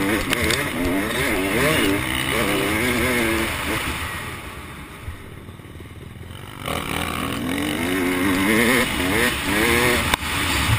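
Motocross bike engine heard from on board, revving hard up and down as the rider works the throttle. About four seconds in the throttle closes and the engine goes quiet for about two and a half seconds, then it picks up again and revs climb repeatedly near the end.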